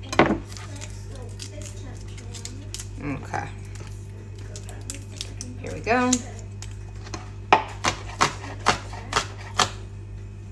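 Chef's knife chopping garlic on a plastic cutting board: about eight quick, sharp knocks in the last two and a half seconds, over a steady low hum.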